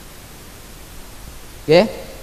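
A pause in a man's talk, filled with a steady faint hiss of background noise, then one short spoken word near the end.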